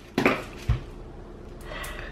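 Scissors set down with a sharp clatter on a plastic-covered table, followed a moment later by a single dull low thump, then faint handling noise.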